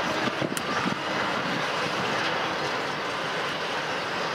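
Steady rumble and rush of a freight train rolling past close by, the wheels of double-stack container cars on the rails, with a few sharp clicks about half a second in.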